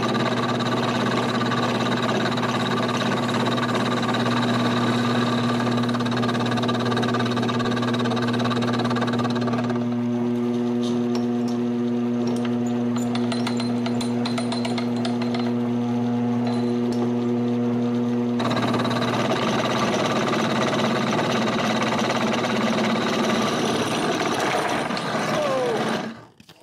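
Homemade wooden milling machine's spindle running slowly while an end mill plunges into steel, a steady mechanical hum with the grinding of the cut. The machine vibrates heavily under the cut. The tone changes for several seconds in the middle, with a finer ticking.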